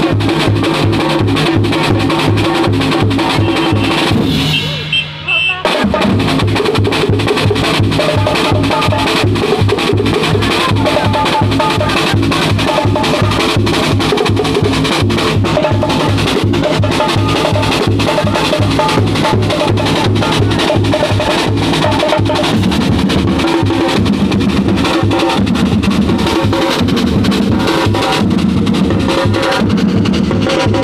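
A drum group playing a fast, steady beat on large barrel bass drums, metal snare drums and a cymbal. The beat stops briefly about five seconds in, then picks up again and runs on.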